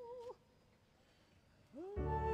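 Opera soprano's held note with a slow, even vibrato that breaks off about a third of a second in, followed by a pause of near silence. Near the end a note slides up in pitch as the music comes back in.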